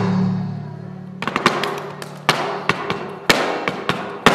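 Flamenco footwork: a dancer's heeled shoes striking a wooden board in sharp, irregular strikes that start about a second in, a few much louder stamps among them. A held low note fades out before the strikes begin.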